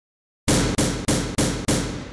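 Logo intro sting: after half a second of silence, five heavy percussive hits at about three a second, each dying away before the next.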